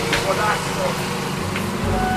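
A steady low mechanical hum, like an engine running nearby, with a single light click just after the start.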